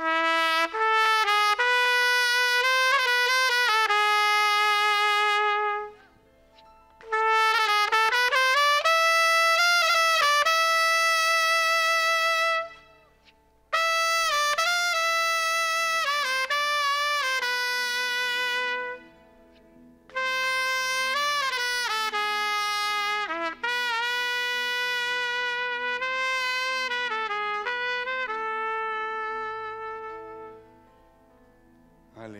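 Solo trumpet played close to a microphone: a slow melody in four phrases of long held notes, with short breaks between phrases, opening a worship song with the trumpet alone. The last phrase fades out near the end.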